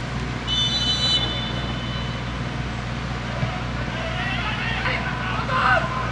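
A referee's whistle blown once, a short shrill blast about half a second in, signalling the kick-off, over a steady low rumble of open-stadium noise. Players shout on the pitch near the end.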